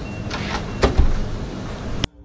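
Front door's lock and handle being worked by hand, with a couple of sharp clicks about a second in.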